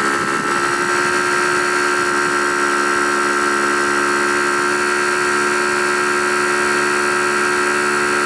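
70mai Air Compressor, a portable 12-volt electric tyre inflator, running with a steady, even hum while it pumps up a car tyre. The tyre is partway through inflating toward its set pressure.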